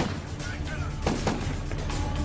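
A burst of gunshots, several sharp cracks in quick succession, over dramatic music.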